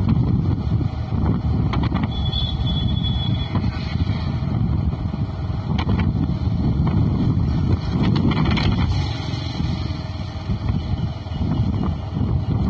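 Wind rumbling on the microphone while riding a moving motorbike, a steady low roar with the bike's running noise underneath.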